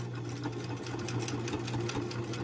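Electric sewing machine running steadily at speed, top stitching through layers of cotton fabric and cotton batting, a constant motor hum with rapid ticking from the needle. It starts abruptly.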